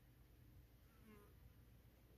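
Near silence, with one faint, short buzz about a second in, from a housefly hovering near the microphone.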